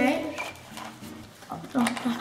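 Girls' speech, a short 'okay' at the start and voices again near the end, with a quieter stretch between holding faint clicks and rustling of plastic toy capsules and packaging being handled on the table.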